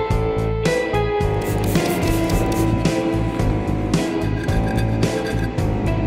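Background music led by guitar.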